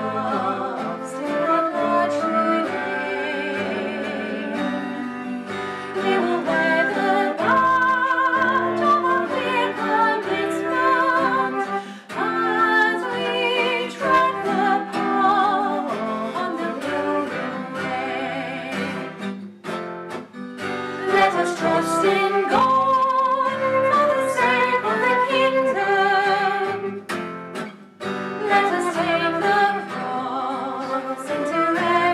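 A hymn sung by a woman and a man, accompanied by a flute and a strummed acoustic guitar. The music pauses briefly between verse lines, a little past halfway and again near the end.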